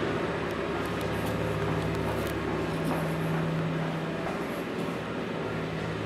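Steady low mechanical hum over an even rush of air noise in a stairwell, with a few faint footsteps going down concrete stairs.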